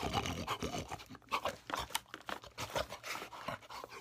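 A man eating face-first from a plate without his hands, as a pig impression: faint, irregular chewing and slurping noises.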